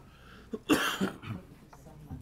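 A person coughs once, a sudden loud burst less than a second in that dies away within about half a second.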